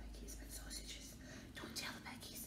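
A woman whispering faintly: a few soft, breathy syllables without voice.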